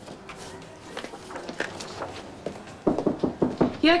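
Footsteps crossing a room, with scattered light knocks that come closer together and louder near the end.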